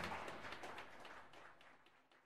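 The close of a jazz band recording fading out to silence, the last sound of the band dying away under a patter of short, sharp strokes.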